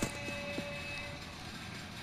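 Faint steady background noise, with a faint held tone through about the first second.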